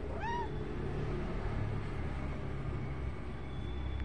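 A domestic cat gives one short, high-pitched meow that rises and falls in pitch, just after the start. A steady low hum runs underneath.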